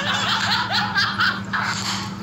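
Men laughing in quick, choppy bursts, heard over a live video call.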